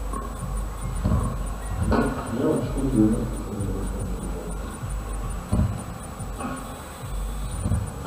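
Distant open-air show sound, music and voices carried over a public-address system, mixed with a constant low city rumble. A faint high ticking repeats evenly, about four times a second.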